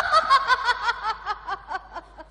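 A woman's stylized Yue opera stage laugh: a rapid run of short falling 'ha' syllables in a high voice, about six a second, fading away near the end.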